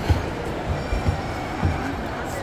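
Steady background noise of a busy indoor shopping-mall atrium, with several soft low thumps.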